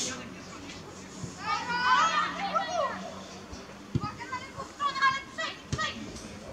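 Children's voices shouting and calling across a football pitch during play, several voices overlapping about a second in and again near the end, with two short thumps in between.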